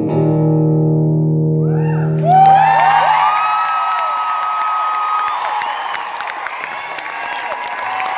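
The last guitar chord of a live song ringing out and fading, then, a little over two seconds in, the audience breaks into applause and cheering, with hand claps close to the microphone.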